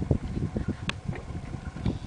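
Wind buffeting the microphone on open water: an uneven low rumble, with a single faint click near the middle.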